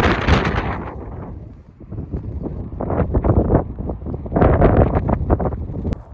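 Wind buffeting the microphone, with footsteps crunching on snow in uneven clusters.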